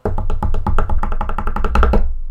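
Drum roll sound effect: a fast, even run of drum strokes, about ten a second, over a low rumble.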